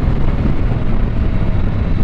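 Husqvarna Norden 901 ridden at road speed: wind rushing over the microphone with the bike's parallel-twin engine running underneath, a steady low roar.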